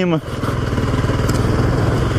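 Motorcycle engine running steadily as the bike cruises at low speed, heard from the rider's seat.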